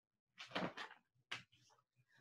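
Paperback picture book being opened and its pages handled: a faint paper rustle about half a second in, and a short one a little later.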